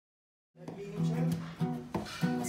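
Music starting about half a second in: a strummed acoustic guitar playing the intro of a children's song.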